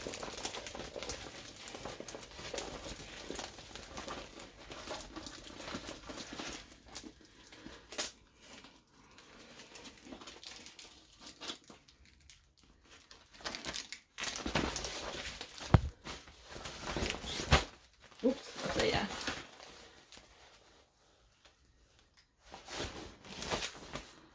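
Diamond painting canvas with its clear plastic protective film crinkling and rustling as it is handled and unrolled, in bouts with short pauses. Two sharp thumps come about two thirds of the way through.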